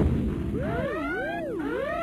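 Electronic sci-fi warbling effect: a siren-like tone sweeping up and down in pitch about twice a second, coming in about half a second in, with higher rising sweeps layered over it.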